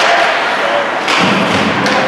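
Ice hockey play at the net: sharp stick-and-puck clicks at the start and near the end, and a heavier thud about a second in. Spectators' voices carry through the rink.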